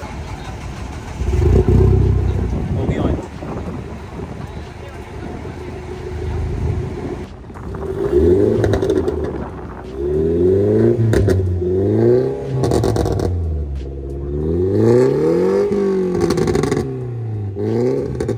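Modified Mini Cooper's four-cylinder engine catching with a loud burst about a second in, then revved up and down in several quick blips and one longer rev near the end.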